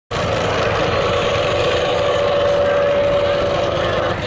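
Engine of a 1984 Dodge pickup running loud and steady while hooked to a pull sled, with a steady whine that fades near the end.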